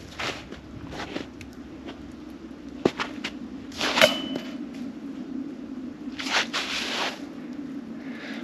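Shuffling steps in wet slush, then about four seconds in a putted golf disc strikes the disc golf basket with a sudden hit and a brief metallic ring from the chains. A longer rustle of movement in the slush follows near the end.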